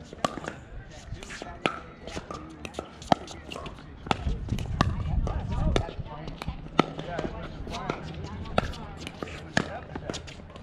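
Pickleball paddles hitting a plastic pickleball back and forth in a doubles rally: sharp pops about every one to two seconds.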